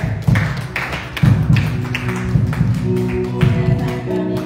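Live church band music: sharp drum strikes over sustained low pitched notes.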